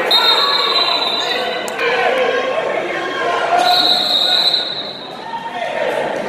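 Voices of spectators and coaches shouting in a gymnasium during a wrestling match, with a couple of sharp knocks on the mat. A high, steady tone sounds twice: once at the start and again about halfway through.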